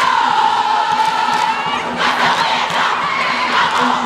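A large crowd of schoolgirl supporters shouting and cheering together in a stadium stand. A long, high collective cry is held for about the first two seconds, then breaks into mixed cheering.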